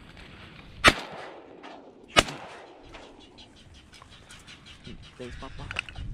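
Two shotgun shots about a second and a half apart, the first about a second in, each followed by a short echo.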